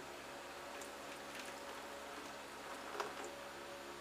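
Quiet, steady room hiss and hum, with a few faint short scratches of a straight-edge shavette blade on lathered stubble, the clearest about three seconds in.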